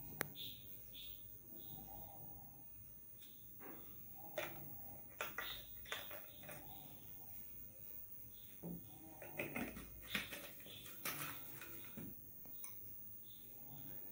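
Faint, scattered clicks and knocks of glass lab ware and reagent bottles being handled on a bench, busiest in the second half as a beaker is set onto a burette stand's base.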